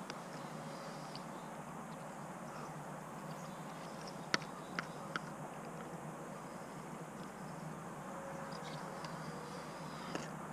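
Faint outdoor quiet with an insect buzzing softly on and off, and three light clicks a little before the middle as a spork knocks against a mess-kit bowl during eating.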